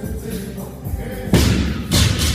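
A 185 lb barbell with rubber bumper plates dropped from overhead onto the gym floor, landing with a heavy thud a little past halfway, with a second thud near the end, over background music.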